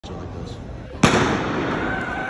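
A starting gun fires once about a second in, a single sharp crack that rings on in the echo of the indoor arena, starting the sprint race. Crowd noise is louder after the shot.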